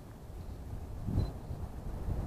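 Wind rumbling on the camera microphone, a low steady buffeting that swells briefly a little past a second in.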